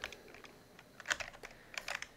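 Computer keyboard typing: a few separate keystroke clicks, a pair about a second in and another pair near the end.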